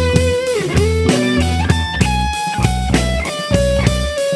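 Blues-rock power-trio music with no vocals: a lead electric guitar playing held notes with pitch bends over bass guitar and drums keeping a steady beat.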